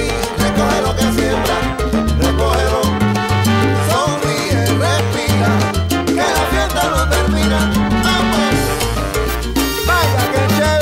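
Background salsa music with a strong bass line changing notes every half second or so and gliding melodic tones above it.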